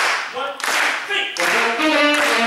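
Jazz big band starting a tune: a steady beat of clap-like hits, about one every two-thirds of a second, with short vocal shouts between them. The horns come in with held notes about one and a half seconds in.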